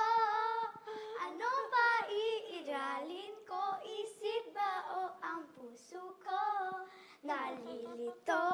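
A young girl singing a song without accompaniment, holding notes that waver in pitch, with short breaks between phrases.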